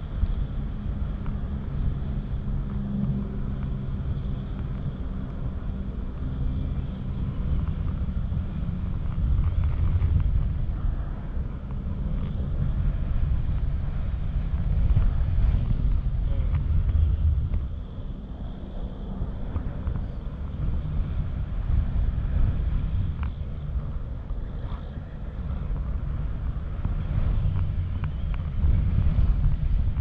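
Wind rushing over a camera microphone during tandem paraglider flight: a steady low rumble that swells and eases every few seconds.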